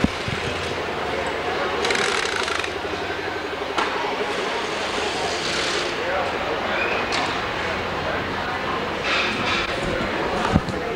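Warehouse background noise: a steady machine drone with indistinct voices, broken by three short bursts of hiss and a couple of sharp knocks.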